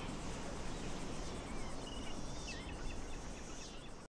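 Faint outdoor ambience: a steady hiss with scattered short chirps and trills from insects, fading out at the very end.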